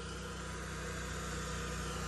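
An engine running steadily in the background: a low, even drone that does not change.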